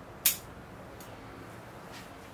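Pruning shears snipping through a thin ficus twig: one sharp snip about a quarter second in, then a faint click about a second in.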